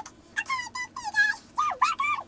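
High-pitched squeaky voice making a quick string of short, gliding squeals with no words, like a cartoon character's chatter.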